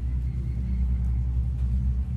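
Steady low rumble with a hum from a running engine or motor.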